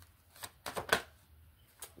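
Tarot cards being shuffled and flicked through in the hands: a run of short, crisp card snaps, the loudest about a second in.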